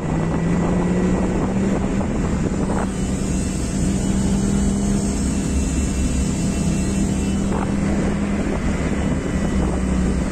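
BMW E36 engine and road and wind noise heard from inside the cabin, a steady low drone while cruising.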